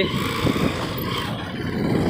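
Motorcycle engine running steadily while being ridden along a dirt track, heard from the rider's seat.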